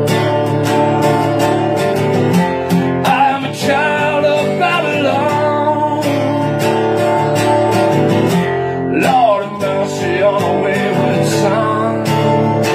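Acoustic guitar strummed steadily, with a man's voice singing drawn-out lines over it.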